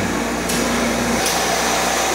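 Tetra Pak Continuous Freezer 1500 running in its automatic cycle: a steady machine hum with a low drone and a constant whir.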